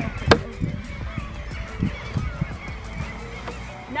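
Clothing rustle and low knocks as a rider pulls herself up into a leather saddle, with one sharp knock about a third of a second in. Repeated faint honking bird calls sound in the background.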